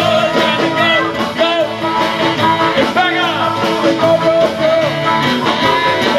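Live rock band playing, with male and female voices singing together over acoustic and electric guitars, keyboard and drums keeping a steady beat.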